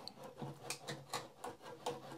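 Small, irregular plastic clicks and light scraping, about half a dozen ticks, as a wire-harness connector is worked loose from its header pins on an old terminal's logic board.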